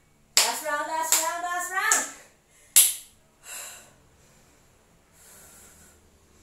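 A woman's voice calling out loudly for about a second and a half, then a single sharp clap near the middle. After that come two heavy breaths out as she catches her breath after a high-intensity interval.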